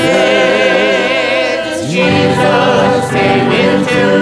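A church choir singing a gospel hymn in held, wavering notes, led by a man's voice with acoustic guitar accompaniment. A new phrase begins right at the start, and the voices move to a new chord about two seconds in.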